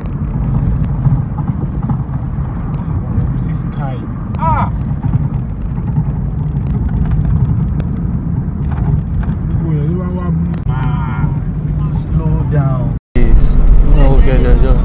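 Steady low engine and road rumble heard from inside a moving car, with brief snatches of voices. About thirteen seconds in the sound drops out for a moment and returns louder.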